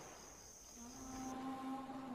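Faint, steady chirring of crickets as a background ambience, which stops about a second and a half in. Under a second in, a low, steady hum with overtones comes in and carries on.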